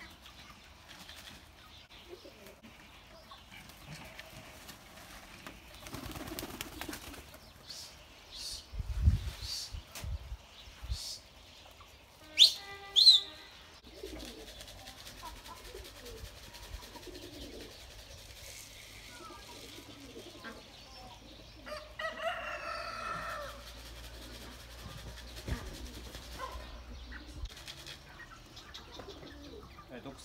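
Domestic pigeon in flight: wing flapping, with a few loud sharp claps near the middle and a short bird call later on.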